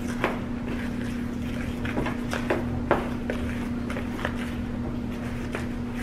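Fork stirring a wet flour-and-cream biscuit dough in a plastic mixing bowl, with irregular clicks and scrapes as it knocks against the bowl. A steady low hum sounds underneath.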